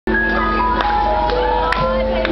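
Live rock band playing the opening of a song, loud: held melodic notes, some sliding in pitch, over a steady low rumble, with a few sharp clicks.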